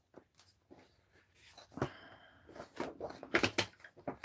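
Paper pages of a disc-bound planner rustling and clicking as they are handled and turned. Soft scattered ticks at first, then a busier run of rustles and clicks in the second half.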